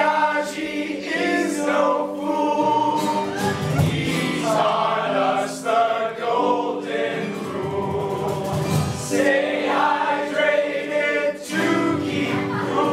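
A group of teenage boys and girls singing together in chorus, holding long notes and moving from note to note with only brief breaks.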